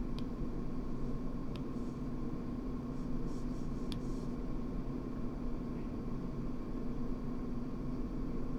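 Steady electrical hum and hiss of the recording, with a few faint clicks of a stylus tapping a drawing tablet, about one and a half seconds and four seconds in.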